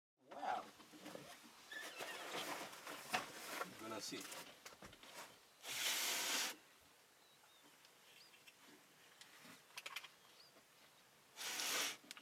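Voices talking in the first half, then a quiet open-air background with faint bird chirps. A short burst of loud hiss comes twice, about six seconds apart.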